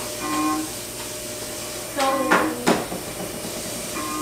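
Short, flat, machine-steady sounds of a TV's fake emergency-broadcast audio, coming in brief spurts. Two sharp knocks fall a little past the middle.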